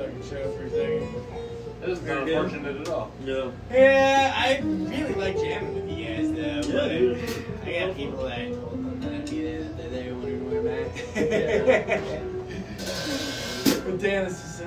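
Guitar played in wandering single-note lines, with voices underneath. A short burst of hiss comes near the end.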